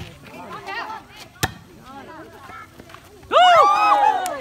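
A volleyball being struck with a sharp smack about a second and a half in, over low chatter from spectators. Near the end, women's voices break out into loud, high-pitched shouting.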